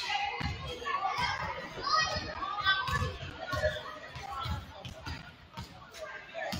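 Basketballs bouncing on a hardwood gym floor, repeated short thumps at an uneven pace, under children's and adults' chatter echoing in a large gym.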